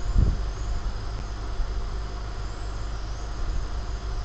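Steady low background hum and rumble, with a brief low thump just after the start.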